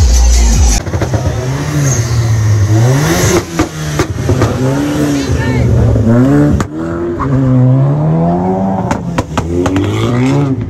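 Car engines revving as the cars pass close by, the pitch climbing and dropping again several times. A few sharp cracks sound in between.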